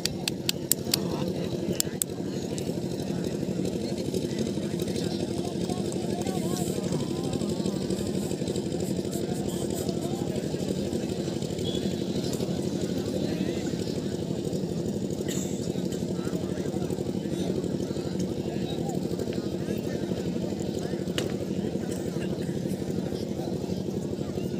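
Crowd of spectators chattering over a steady low hum, with a few sharp clicks in the first two seconds.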